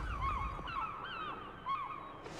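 Gulls calling: a quick series of short, bending cries, several a second.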